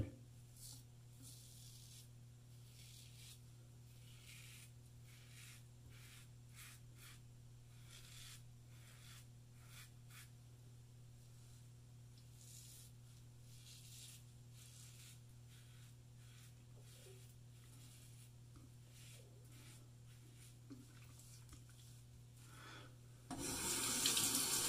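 Karve safety razor scraping through lathered stubble on the neck: a faint run of short, separate rasping strokes over a low steady hum. A tap starts running near the end.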